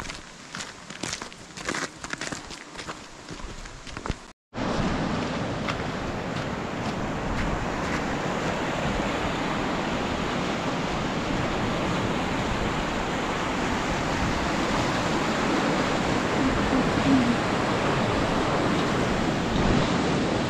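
Footsteps on a snowy, icy path, about two a second. A cut about four seconds in, then the steady rush of a mountain stream, growing slightly louder.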